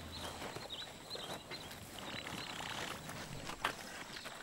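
Faint rustling and soft, irregular footfalls of elephants shifting about in dry scrub, with faint high chirps in the background.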